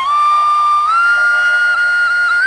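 Flute playing a slow devotional melody in long held notes, stepping up in pitch about a second in, over a faint steady backing: the instrumental intro of a Krishna bhajan.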